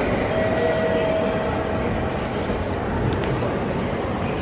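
Steady, echoing ambience of a busy railway station concourse: a continuous hubbub with a low rumble.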